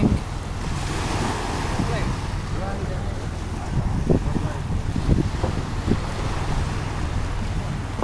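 Small wooden water taxi's engine running steadily at idle while it holds against a jetty, with wind buffeting the microphone and water lapping.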